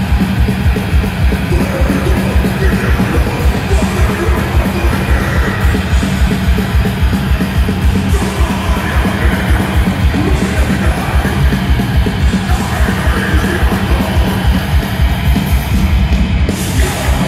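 A death metal band playing live, heard from the crowd: heavily distorted guitars and bass over very fast, pounding drums, with growled vocals coming in several times.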